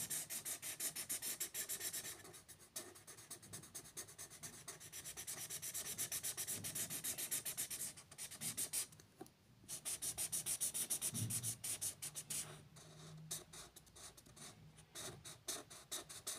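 Felt-tip marker scratching on paper in quick back-and-forth strokes as a shape is coloured in, with a brief pause a little past the middle.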